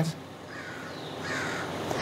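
Steady outdoor background noise from an open field microphone, growing slightly louder, with a faint bird calling in the second half.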